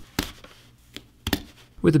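Utility-knife razor blade cutting into the knit seam of a fabric glove, giving a few sharp snicks as threads part: one about a quarter second in and a quick pair just past the one-second mark.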